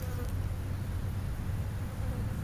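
A low, steady buzzing hum.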